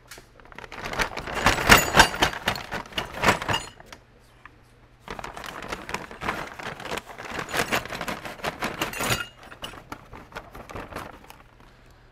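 Brown paper bag crinkling and rustling as it is handled and tipped out, in two long bouts of crackle, with light clinks of metal gun parts.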